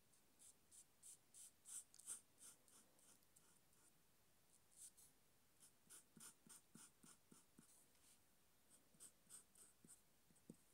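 Faint scratching of a marker pen nib on paper in many short strokes, about two or three a second, with a couple of brief pauses.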